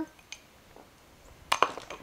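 Quiet room tone, then a short cluster of sharp clicks about a second and a half in, like a small kitchen utensil or container knocking.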